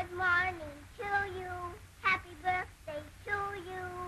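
A small girl's high voice singing a string of short, held notes with brief breaks between them.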